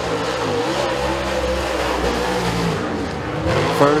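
Super late model dirt race car's V8 engine running hard on a time-trial lap, its pitch wavering through the turns and rising near the end.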